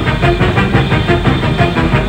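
A jazz big band playing live: saxophone section with the drum kit keeping a steady beat of stick strokes on drums and cymbals.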